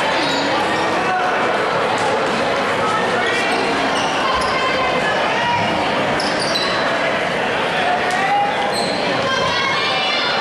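Crowd of spectators chattering in a school gymnasium: many overlapping voices, steady and echoing in the hall.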